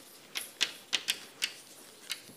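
Chalk writing on a blackboard: an uneven quick series of sharp taps as the letters are struck out, about five in two seconds.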